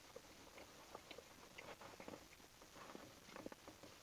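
Faint chewing of a mouthful of pizza, with small scattered clicks and rustles as a thick pan-crust slice is pulled apart in its cardboard box.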